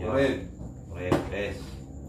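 A single sharp slap on a tabletop about a second in, among a man's speech.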